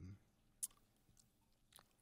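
Near silence: room tone, with one short sharp click about half a second in and a couple of fainter ticks later.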